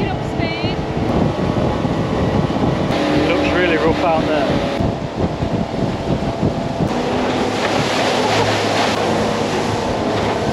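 A motorboat under way at speed: its engine runs steadily beneath a rush of wind and water.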